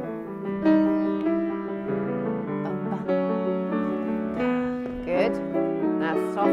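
Piano playing ballet rehearsal accompaniment, a classical melody over held chords with notes changing about every half-second.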